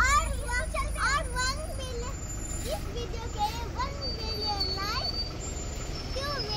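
Children talking in high voices over the steady low rumble of buses and traffic on the street.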